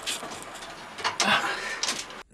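Handling noise from an air conditioner's outdoor unit being shifted on its wall bracket while a rubber anti-vibration pad is fitted under its foot: scraping and rustling, with a few sharp clicks near the end.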